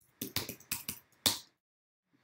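Computer keyboard keystrokes: about six sharp clicks in quick succession, the last one the loudest, as an R code line is edited and run.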